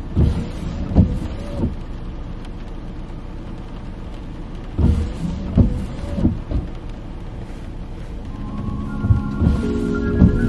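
Steady noise inside a car in the rain, broken by a few short knocks. Soft background music fades in near the end.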